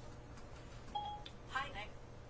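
A short electronic beep about a second in, then a brief faint voice near the end, over a steady low room hum.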